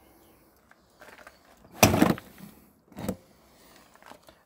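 A caravan toilet's plastic waste cassette being pushed back into its hatch: a loud scraping slide of about half a second near the middle, then a shorter knock about a second later.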